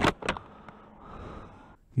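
Motorcycle riding noise picked up by a helmet-mounted camera: a steady wash of wind and engine sound, with a couple of short sharp sounds at the start, cutting off suddenly just before the end.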